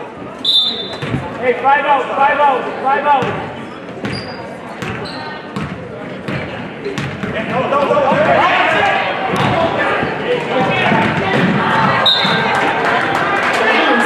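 Basketball bouncing on a hardwood gym floor, repeated sharp thuds ringing in a large gymnasium, with brief high squeaks and the voices of spectators and players.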